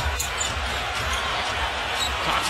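A basketball being dribbled on a hardwood court, with low repeated thumps, under a steady hum of an arena crowd.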